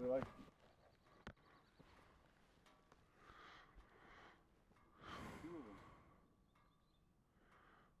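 Near silence, with a single faint click and faint, distant voice sounds.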